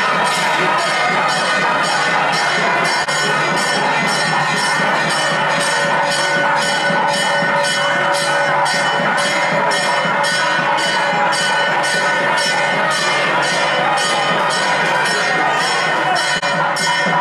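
Temple bells ringing in a steady rhythm, about two to three strokes a second, their tones held and overlapping, with music.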